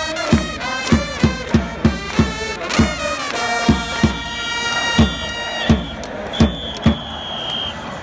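A baseball cheering squad's trumpets play a cheer song over a bass drum struck about twice a second, with one high note held near the end. Fans clap along.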